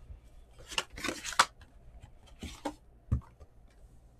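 Cardboard trading-card box being handled and opened: a few short scraping, rustling noises and a dull knock a little after three seconds in.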